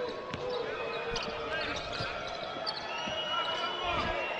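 A basketball being dribbled on a hardwood court, a few separate bounces over the steady murmur of an arena crowd.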